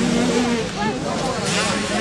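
Small 65 cc two-stroke motocross bike engines running on the track, holding a steady note that shifts up and down in steps as the riders work the throttle. Voices of people nearby mix in.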